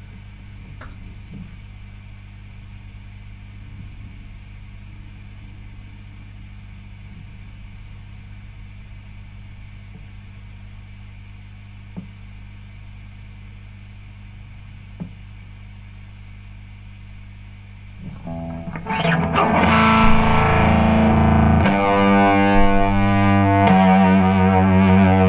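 A steady low electrical hum from the guitar rig with a couple of faint clicks, then about eighteen seconds in a distorted electric guitar comes in loudly, strumming chords through an amplifier.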